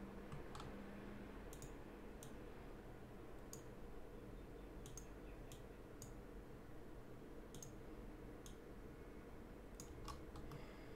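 Faint computer mouse clicks, about ten at uneven intervals, over a steady low room hum.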